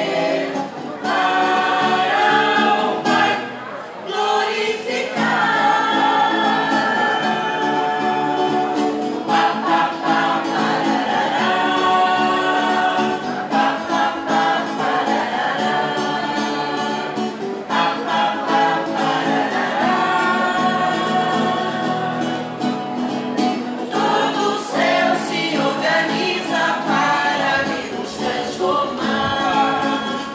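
A choir singing a song with sustained notes, pausing briefly twice.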